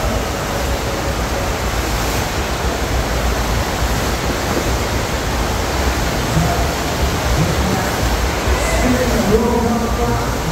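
Steady loud rush of water from a FlowRider double-jet sheet-wave machine, its jets driving a thin sheet of water up the ride surface beneath a rider.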